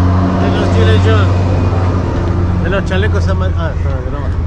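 An engine running steadily nearby, a constant low hum, with people talking over it.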